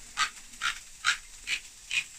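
Hand-held can opener cutting round the lid of a tin, its turning key squeaking five times at an even pace of about two squeaks a second, one squeak per turn.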